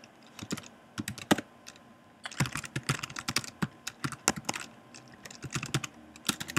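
Typing on a computer keyboard: a few scattered keystrokes, a short pause about two seconds in, then a quick, dense run of keystrokes.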